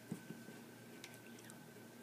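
Faint squishy clicks of baked polymer-clay stars being stirred in glue inside a small glass bottle, with a few light taps near the start and again about a second in.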